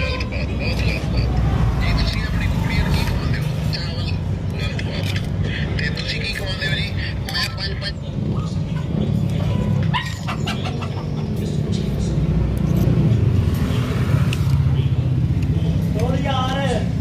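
Voices talking in the background over a steady low rumble, with some music mixed in.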